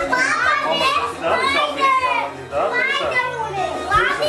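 Young children's high-pitched voices, excited chatter over background music.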